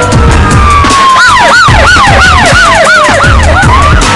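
Siren sound effect over a dramatic music bed with a beat: a long wail falling slowly in pitch, joined about a second in by a fast yelp of rising-and-falling whoops, about three a second.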